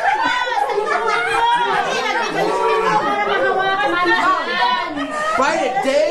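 Several people talking and calling out over one another: lively party chatter from a group of guests.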